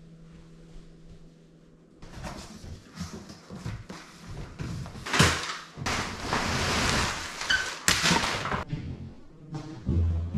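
Cardboard bike-frame box and its packing being opened and pulled about: rustling and scraping with scattered thunks, starting about two seconds in after a quiet room hum.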